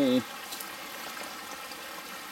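Spring water pouring in a thin stream from a metal pipe spigot into a water-filled basin, splashing steadily.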